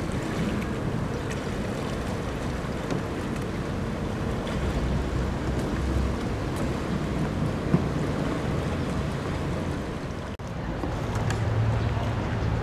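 Wind buffeting the microphone: a steady rushing noise with a low rumble. The sound drops out for an instant about ten seconds in.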